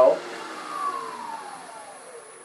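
Wood lathe switched off and spinning down: its motor whine falls steadily in pitch and fades as the spindle coasts to a stop.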